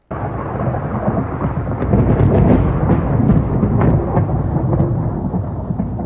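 Thunderstorm sound: a steady low rumble of thunder with rain and scattered crackles, starting suddenly.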